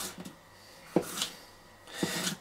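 A zero-grind scandi knife slicing through a red bell pepper and knocking on a wooden cutting board. A few light clicks come near the start, then a sharp knock of the blade on the board about a second in, with a short crisp cutting sound after it.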